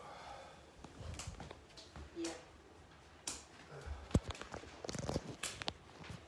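Handling noise of a handheld camera being moved about: irregular light clicks, knocks and rustles, coming more often in the second half.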